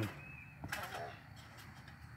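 Boy landing a flip on a backyard trampoline: one brief thump from the mat and frame a little under a second in, with a short pitched sound right after it, over a quiet outdoor background.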